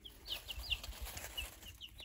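Week-old chicks peeping: a string of short, high peeps from several birds, several a second, many of them sliding down in pitch.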